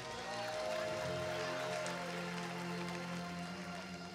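Soft background music from a keyboard: sustained chords held for a second or more at a time.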